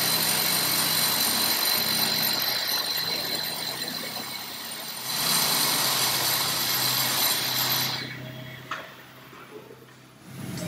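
Cordless hammer drill boring into the concrete floor in two long runs with a short break about five seconds in. It stops about eight seconds in, leaving quieter work sounds and a single click.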